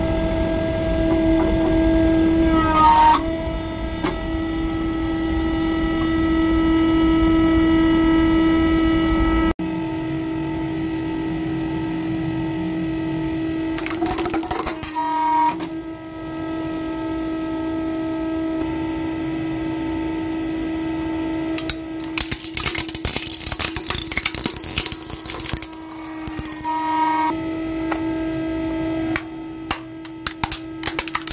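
Hydraulic press running with a steady motor hum as the ram bears down, the hum changing abruptly about ten seconds in. Bursts of crackling and crunching come as objects give way under the ram, briefly just before the middle and in a longer stretch about three-quarters of the way through, with scattered clicks near the end.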